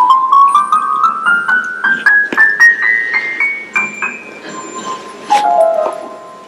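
Synthesized piano-like notes from a plant-music device, which turns a plant's electrical signals into notes, climbing note by note up the scale for about four seconds. A loud run of notes falls back down near the end. The presenter hears the climb as the plant running up the whole scale to find a note that was moved to the top of the keyboard.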